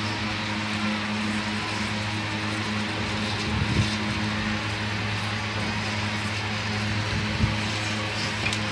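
A steady low mechanical hum over background noise, with two soft knocks, a little before halfway and near the end.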